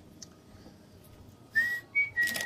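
Quiet room sound, then about one and a half seconds in a person whistles a single high note that slides up slightly and is held, with a brief break near the end.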